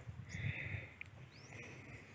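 Faint open-field ambience: a steady high whine, with two short raspy buzzes and a brief rising chirp typical of insects and birds in the crops.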